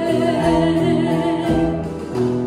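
A woman singing a held note with vibrato in a gospel-style song, over musical accompaniment.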